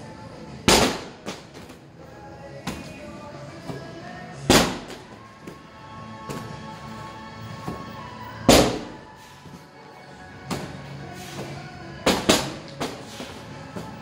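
Loud thuds of a 6 lb medicine ball being thrown and handled, one about every four seconds with a quick double near the end, over steady background music.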